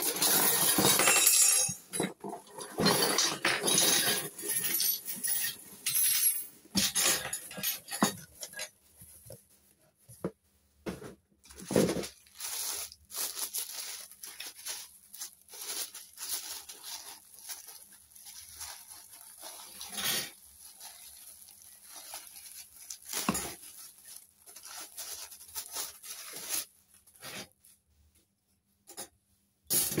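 Cardboard box flaps and plastic wrapping rustling and crinkling as a miniature stainless-steel toy kitchen set is unpacked, with scattered light clinks and taps of the small steel cups, pots and spoons being handled and set down. Dense rustling for the first several seconds gives way to sparser clicks and clinks.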